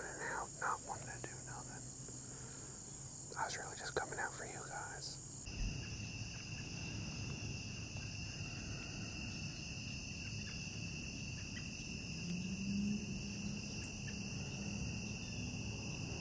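A steady high-pitched chorus of insects, with a man whispering a few words during the first five seconds. About five and a half seconds in, the insect sound switches to a lower steady trill, and a faint low hum rises briefly near the end.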